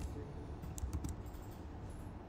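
Computer keyboard typing: a handful of faint, unevenly spaced keystrokes as code is entered.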